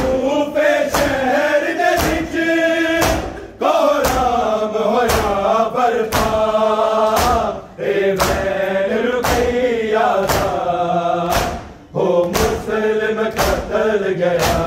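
Men's voices reciting a Shia noha in unison, in a loud, chanted melody, with short breaks between lines. Running through it is matam: hands striking bare chests together in a steady beat, just under two strikes a second.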